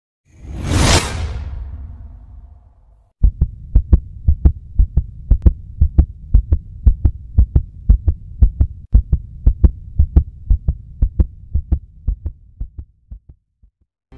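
Intro sound effects: a loud rush of noise that swells and dies away, then a fast run of deep thumps, about four a second, that slows and fades out near the end.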